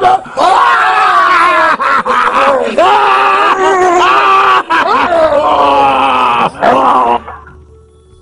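A man's voice groaning and wailing loudly in long, drawn-out cries that bend up and down in pitch, with short breaks between them, fading away about seven seconds in.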